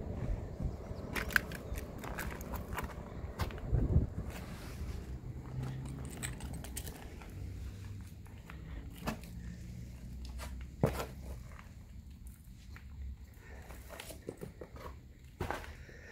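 Footsteps crunching and scraping over loose brick rubble and debris, with scattered clicks and knocks and a low rumble in the first half. A louder knock comes about four seconds in and another near eleven seconds.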